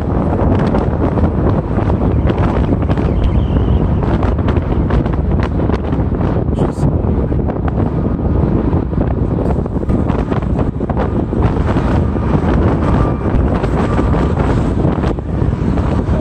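Wind rushing and buffeting over the microphone of a moving car, mixed with the car's steady road noise.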